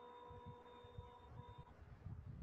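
Near silence: a faint steady electronic tone with a couple of higher overtones, which breaks off briefly and stops near the end, over soft irregular low thumps.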